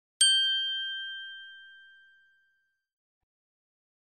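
A single bright chime ding, struck once and ringing out as it fades over about two seconds. It marks the end of the listening exercise.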